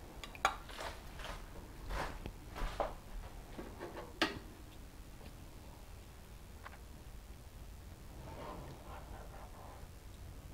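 A metal serving spoon clinking and scraping against a glass baking dish and a plate as food is dished up. A run of sharp clicks fills the first four seconds or so, the loudest just after four seconds, followed by only faint handling sounds.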